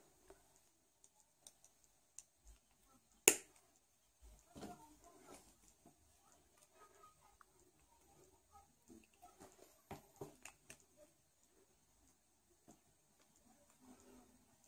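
Faint clicks and rustles of needle-nose pliers working a thin wire, twisting its end into a small loop, with one sharp click about three seconds in.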